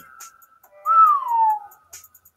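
A man whistling one note that slides down in pitch, a little under a second long, about halfway through.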